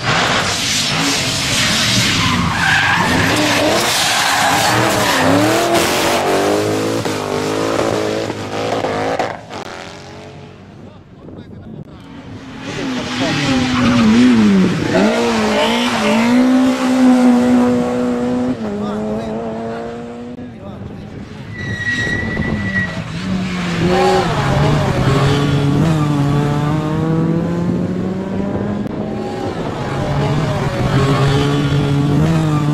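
Rally cars' engines revving hard through tarmac corners in several separate passes, the pitch climbing and dropping with each gear change. A short high tyre squeal comes about two-thirds of the way in.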